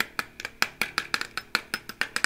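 A quick run of sharp taps and clicks, about five a second, on a homemade instrument built on a metal vacuum-cleaner tube, each tap ringing briefly in the metal.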